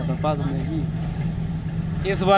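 A bus's engine and road noise heard from inside the passenger cabin while it drives: a steady low drone with a rumble beneath it.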